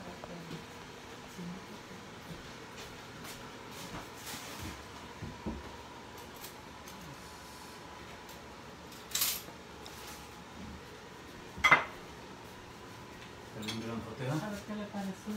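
Plate and metal cutlery clinking on a table as food is served: scattered light clicks, a short louder clatter about nine seconds in, and a sharp clink with a brief ring near the end, the loudest sound.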